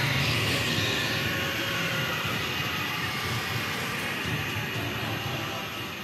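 Steady rumbling sound effect from the anime soundtrack, a continuous noisy rush like a jet engine, building power as the Ten Tails readies its cataclysm attack; it grows slowly quieter toward the end.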